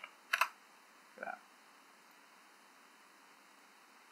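A quick couple of computer keyboard keystrokes about half a second in, typing a value into a settings field; faint room tone follows.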